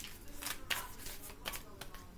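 Tarot cards being shuffled and handled: a string of quick, irregular crisp snaps and slaps of cards.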